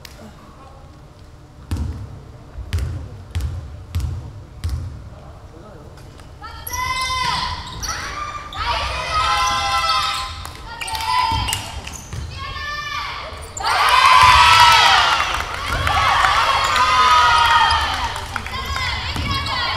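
A basketball bounced on a hardwood gym floor, a slow dribble of about six bounces starting about two seconds in. From about six seconds on, women players shout and call out on the court, loudest near the end.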